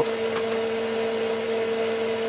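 Steady hum of a running bench instrument, the open Keithley 228A voltage/current source, with a low and a higher tone held steady. A faint click or two from front-panel keys near the start.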